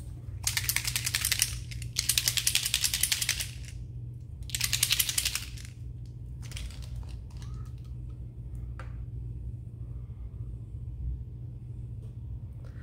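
Small bottle of alcohol-ink clay spray being shaken, three bursts of fast rattling about a second long each in the first half, followed by a few light clicks and taps of bottle and brush handling over a steady low hum.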